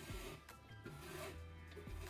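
Twine rubbing faintly as it is pulled through a punched hole in a cardboard box, with a light tap about half a second in, over quiet background music.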